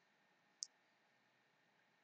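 Near silence, broken by a single short, faint click about half a second in.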